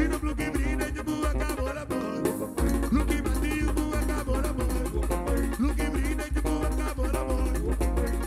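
Upbeat band music driven by a steady pulsing bass beat under dense instrumental parts. The bass drops out briefly about two seconds in, then comes back.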